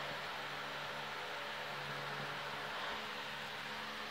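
Room tone: a steady hiss with a faint low hum.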